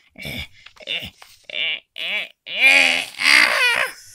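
A high voice giving a run of short panicked squeals and wails, the last two longer and loudest.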